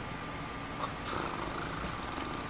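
Room air conditioner running with a steady hum, with a soft breathy rustle about a second in.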